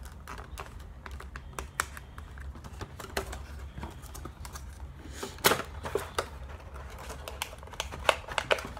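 Irregular small clicks and taps of a lipstick and its packaging being handled as it is worked out of a boxed lip kit, with a sharper click about five and a half seconds in.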